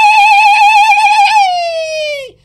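A man's loud, long, high-pitched celebratory yell, held with a wavering vibrato. Its pitch slides down and fades in the last half-second.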